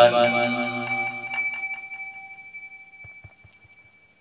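The chanted invocation ends on its last syllable, then a struck Buddhist bowl bell rings out, its high and lower tones fading away over about three seconds.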